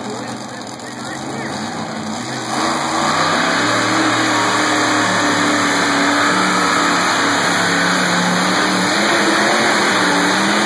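Pulling tractor's engine running low, then about two and a half seconds in it revs up and holds a loud, steady high-revving note under load as it drags the weight sled, with crowd chatter underneath.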